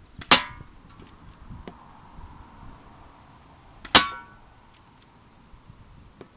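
Two airsoft BBs striking hanging aluminium soda cans, each hit a sharp metallic clang with a brief ring, about three and a half seconds apart. Faint ticks fall between them.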